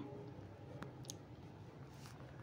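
Two faint clicks, about a third of a second apart, from writing on a phone's touchscreen, over quiet room tone.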